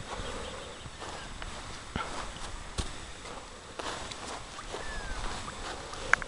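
Faint outdoor background with a few soft knocks and shuffling steps on grass as a horse and its handler move about.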